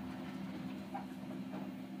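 Low, steady hum inside a moving elevator car as a geared-traction passenger elevator travels down between floors.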